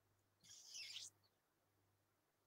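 Near silence: room tone over a call line, with one brief, faint hiss about half a second in.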